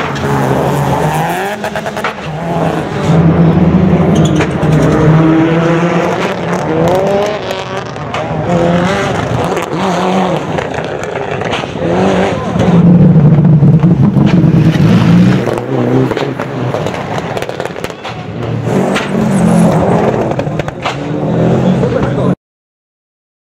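Rally car engines revving hard as several cars pass one after another, the pitch rising and falling through gear changes. The loudest passes come a few seconds in, about two-thirds of the way through, and near the end.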